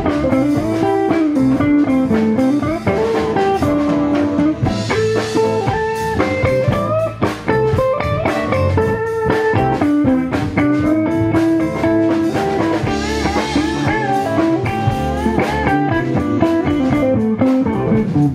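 Live blues band: electric guitar playing a lead line with bent notes over a drum kit.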